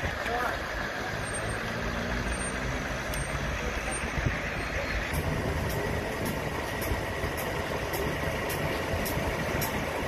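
Idling engines of parked emergency vehicles with a steady rumble and indistinct voices. About halfway through, after a cut, a faint regular ticking joins in, about two ticks a second.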